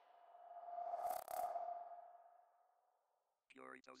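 Synthesized swell from an electronic drum and bass track's outro: a steady mid-pitched tone with hiss that builds to a peak about a second in and fades away over the next two seconds. A brief voice snippet follows near the end.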